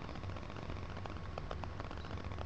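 Brush working loose 23-karat gold leaf shavings on a sized finial ball: faint, irregular light ticks and crackle over a low steady hum.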